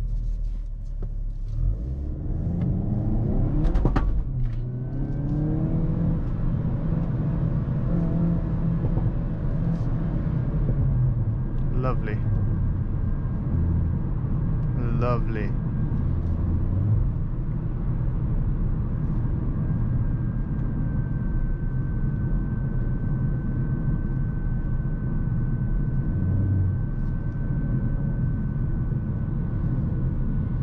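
Hyundai Kona N's turbocharged 2.0-litre four-cylinder accelerating hard from a launch-control start, heard inside the cabin. Its revs climb for the first few seconds. A short sharp sound about four seconds in comes as the revs drop at an upshift of the 8-speed dual-clutch gearbox. It pulls up through the gears again before settling into steady running with road noise.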